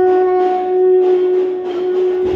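Conch shell (shankha) blown in one long, steady note.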